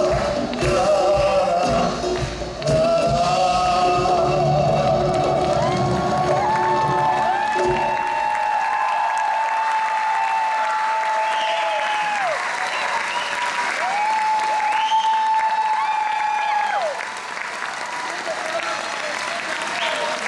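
A live band plays the last bars of a song and stops about eight seconds in; audience applause carries on after it, with two long held voice notes rising over the clapping.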